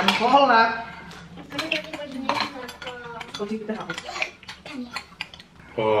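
Metal spoons clinking and scraping against ceramic bowls as several people eat, in quick irregular taps.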